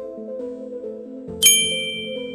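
Background electronic music with a simple stepped melody, and about a second and a half in a single bright bell-like ding that rings out for about a second, an edited-in alert sound effect.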